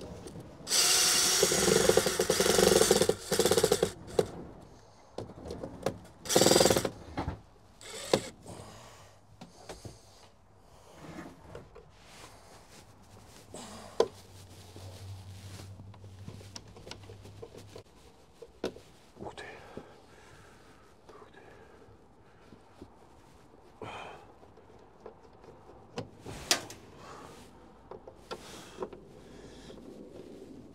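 Cordless drill driving screws into a truck's steel door frame: a long run of the motor about a second in, a shorter run around six seconds, then scattered clicks and knocks of hand work on the door.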